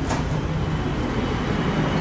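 A steady low rumbling noise with no clear single source.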